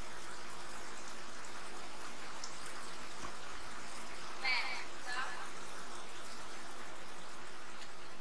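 Steady hiss of background noise at an indoor diving pool, the crowd and water of the venue, with one brief warbling high-pitched sound about four and a half seconds in.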